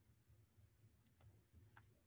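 Faint clicks of small plastic counting cubes being set down on a paper number line on a desk: a quick double click about a second in and another click near the end.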